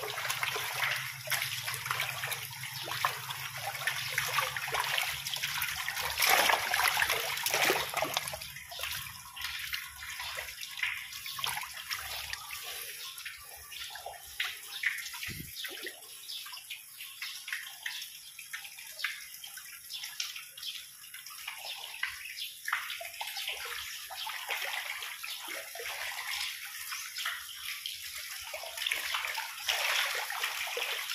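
Water splashing and sloshing in a concrete fish pond as a dense crowd of tilapia, gourami and climbing perch break the surface, many small splashes overlapping, loudest a few seconds in.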